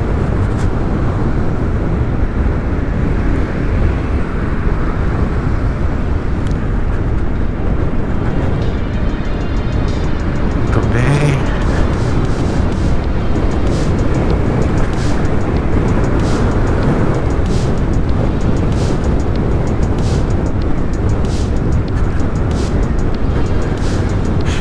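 Steady wind rush on the microphone with tyre and road noise from a NIU NQi GTS electric scooter riding at about 55 km/h. Faint music with a steady beat underneath.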